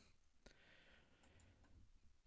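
Near silence: room tone, with one faint computer mouse click about half a second in.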